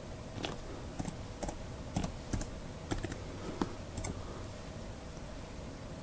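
Typing on a thin Felix WriteOn Bluetooth keyboard: about a dozen irregular key clicks over some four seconds, then the typing stops.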